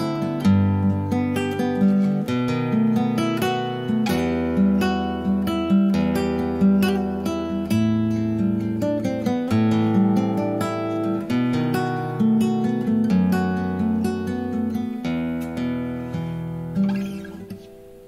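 Solo acoustic guitar playing the instrumental close of a song: a steady run of plucked chords, ending in a last chord about a second before the end that rings out and fades.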